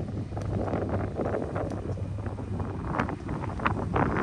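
Wind buffeting the microphone over a steady low hum, with a few sharp clicks near the end.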